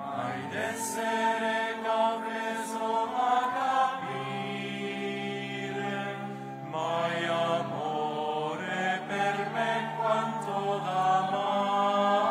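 Voices singing a slow liturgical chant in long held notes, moving to a new note every few seconds.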